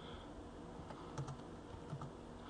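A few faint computer keyboard keystrokes, sparse clicks typed into a code editor.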